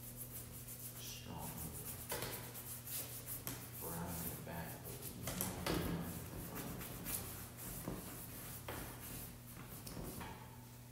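Paintbrush strokes scratching and scraping on a stretched canvas, a rapid irregular series of short strokes, over a steady low hum.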